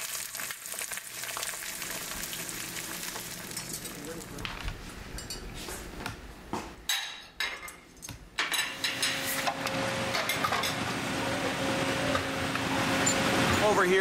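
Egg frying in a pan, sizzling steadily, with a few light clicks of a utensil. In the second half a steady low hum joins the hiss.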